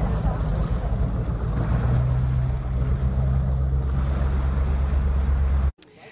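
A boat's engine running with a steady low drone, mixed with wind buffeting the microphone and the wash of open-sea waves. It cuts off suddenly near the end.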